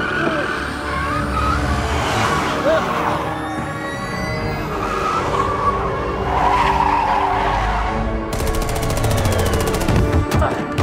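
Orchestral-electronic film score with held notes, mixed with car-chase effects: engines and skidding tyres. A fast ticking pulse comes into the music about eight seconds in.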